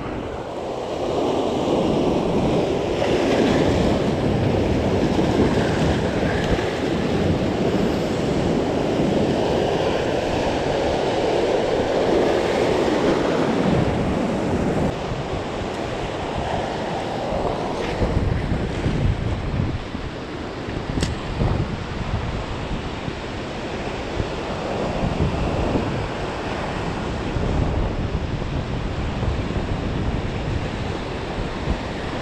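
Ocean surf washing in over shoreline rocks, a continuous rushing wash, with wind buffeting the microphone.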